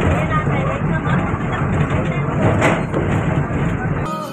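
Moving bus heard from inside the cabin: a steady low engine and road rumble with rattling.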